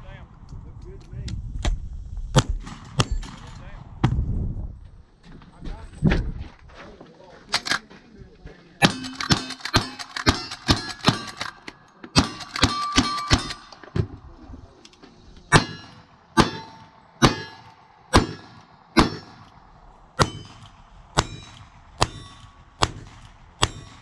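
Lever-action rifle firing a string of shots at steel plate targets, each shot followed by the ring of the struck steel. There are a few shots early, a fast run of closely spaced shots and rings in the middle, then about ten shots roughly a second apart.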